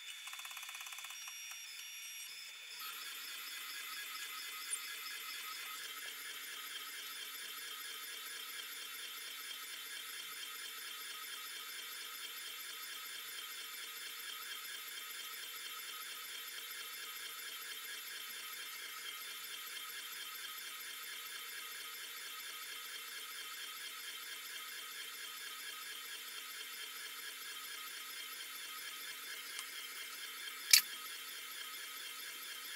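UV flatbed inkjet printer printing, its print-head carriage shuttling back and forth. It hums quietly at first, then from about three seconds in settles into a steady high-pitched whir.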